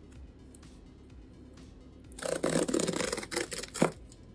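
Cardboard tear strip being ripped open along the length of a shipping box. A rough ripping starts about two seconds in, lasts about a second and a half, and ends with a sharp snap.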